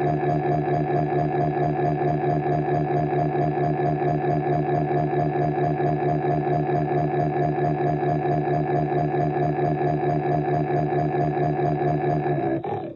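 A loud, sustained electronic tone with a buzzy, organ-like timbre, held on one pitch and pulsing rapidly and evenly throughout. It is a dramatic sound effect marking the shock of being caught.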